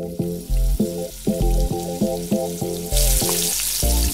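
Burger patties sizzling on a flat-top griddle, the sizzle growing much louder about three seconds in, under background music with a steady beat.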